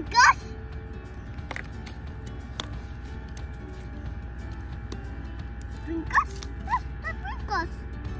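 Soft background music with steady held tones. Over it come a few short, high-pitched squeaks that bend up and down in pitch: one right at the start and a cluster about six to seven and a half seconds in.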